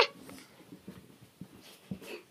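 A short high-pitched voiced cry right at the start, then soft rustling of bedding and faint small sounds.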